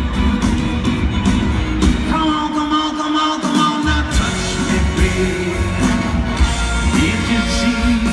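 A live rock band plays through a large arena PA. The bass and kick drop out for about a second, three seconds in, then the full band comes back in.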